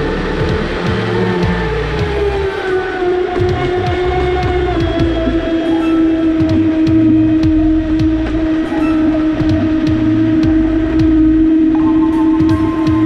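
Background music mixed with the onboard sound of a Traxxas Spartan RC speedboat running fast across choppy water: a steady tone that settles lower early on and then holds, with splash and spray noise.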